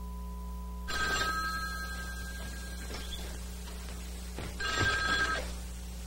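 A rotary-dial telephone's bell rings twice, about four seconds apart, over a steady low hum.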